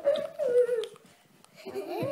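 A small child's drawn-out wordless vocal sound, sliding slowly down in pitch for about a second, then a short pause and another rising-and-falling vocal sound near the end.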